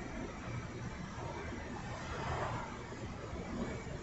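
Faint, steady outdoor background noise with no distinct event, swelling slightly about two seconds in.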